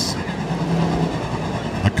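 Several hobby stock race cars' engines running together on the dirt oval, a steady drone with a low hum.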